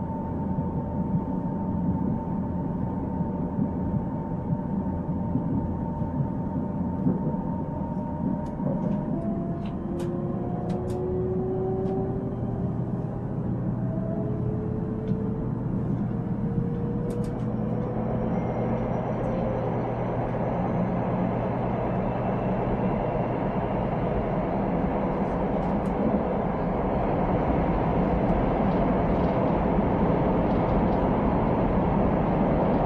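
Interior of a Korail Nuriro electric multiple-unit train car under way: a steady low running rumble, with a faint rising whine in the middle and a few light clicks. The noise grows louder over the last dozen seconds.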